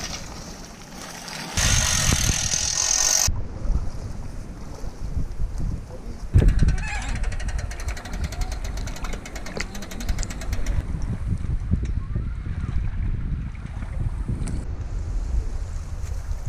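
Wind on an action camera's microphone with water lapping at a stony shoreline, changing in character several times. One loud knock about six seconds in.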